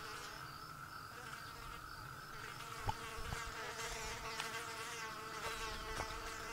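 Several flies buzzing around together, a steady drone with wavering pitch, with two faint clicks about three seconds in.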